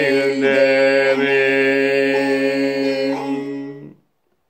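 A man's voice singing the long held final note of a Turkish folk song (türkü) over music, steady in pitch, which stops abruptly near the end.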